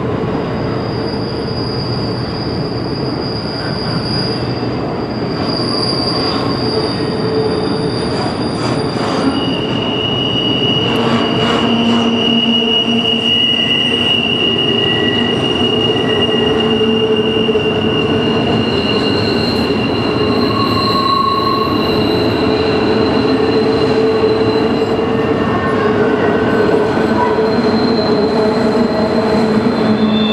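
Double-stack container cars of a freight train rolling over a steel trestle bridge, with a steady rumble of wheels on rail. Several long, high-pitched wheel squeals come and go at different pitches over it.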